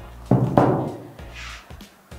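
A single thud about a third of a second in, fading away over the next half-second, over faint background music.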